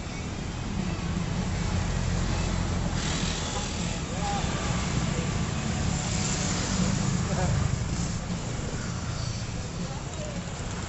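Street traffic at close range: small motorcycles and a car passing, their engines making a steady low rumble that is loudest through the middle and eases near the end.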